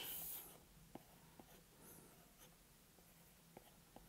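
Faint stylus taps and strokes on a tablet's glass screen while sketching: a handful of light ticks spread through, after a brief hiss at the start.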